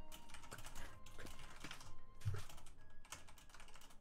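Typing on a computer keyboard: a run of quick, light keystrokes.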